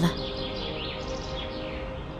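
Soft background music with held notes under outdoor ambience, with faint bird chirps for about a second near the middle.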